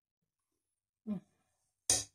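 A glass honey jar knocking and clinking against a stand mixer's metal whisk: a short dull knock about a second in, then a sharp clink near the end.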